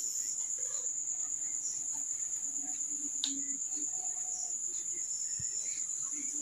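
Crickets trilling: one steady, high-pitched continuous note.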